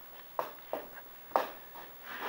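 Three short, light knocks in a small room, the last one the loudest, over faint room noise.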